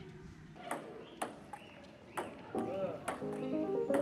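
Table tennis ball clicking against bats and table in an irregular rally, a sharp tick every half second to a second, over background music that grows fuller after about two and a half seconds.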